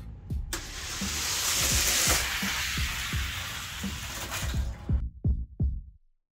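Hot Wheels die-cast cars rolling down a long plastic track: a steady rushing noise that starts about half a second in and dies away near five seconds. A hip-hop beat plays underneath.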